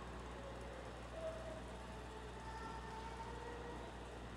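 Hushed church interior: faint room tone with a steady low electrical hum and a few soft, held tones drifting in and out.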